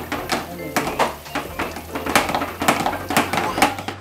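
Tap water running into a stainless-steel sink while a whole yam is rinsed and turned by hand, with frequent sharp knocks and clatters against the sink.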